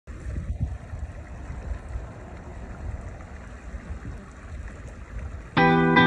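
Low, uneven outdoor rumble of wind and water. About half a second before the end it is cut across by a loud, ringing guitar chord as music starts.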